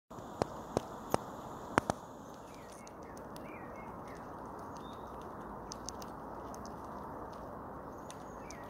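Red squirrel eating a peanut up close: five sharp cracks of the shell in the first two seconds, then a few fainter nibbling clicks.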